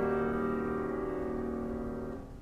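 A piano chord left ringing and slowly dying away, several notes sustained together, in an old LP recording of a piano concerto.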